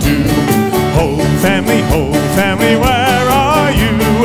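Live band playing an instrumental break with a steady drum beat and guitars under a wavering lead melody.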